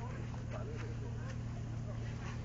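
Faint voices talking in the background over a steady low hum.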